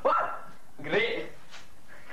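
A dog barking twice, short barks about a second apart.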